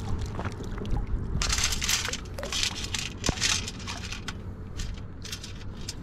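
Water draining and pebbles rattling in a perforated stainless steel beach scoop as it is shaken, in several short bursts.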